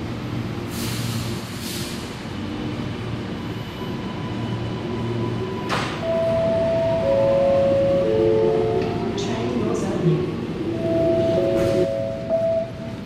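Alstom Metropolis driverless metro train pulling out of an underground station, running with a low hum and rumble. From about halfway, a series of long steady electronic tones sounds, each at a different pitch, with a faint rising whine beneath them.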